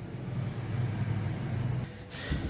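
An engine running steadily at idle, a low even hum with no change in speed; it cuts off abruptly near the end.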